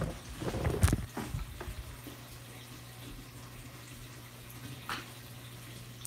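Water moving in a saltwater reef aquarium: a faint, steady rush and trickle of circulating water with a steady low hum. There are a few knocks and a low rumble in the first second or two, and a single click near the end.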